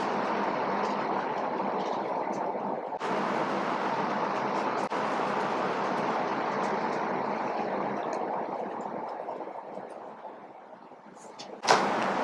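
Felt-tip marker scratching across paper as words are written out, fading away about ten seconds in; a short knock comes just before the end.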